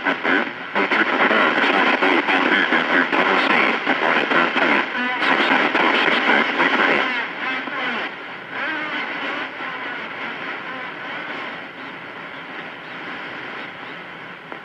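CB radio receiver audio: a distant station's voice coming in garbled and unintelligible under heavy static and overlapping signals. The signal drops weaker about halfway through, leaving fainter static and chatter.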